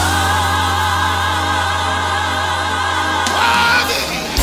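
Contemporary gospel music: a choir holds a sustained chord with wavering vibrato over a steady bass note. The chord shifts near the end.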